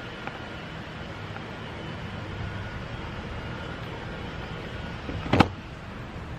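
Steady outdoor background rumble with no words, broken once by a sharp knock a little over five seconds in.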